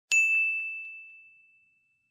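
A single bell-like ding sound effect, struck once and ringing on one high tone that fades away over about a second and a half.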